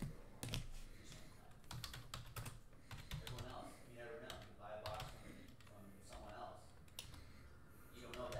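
Computer keyboard being typed on: short runs of light keystroke clicks, faint and irregular.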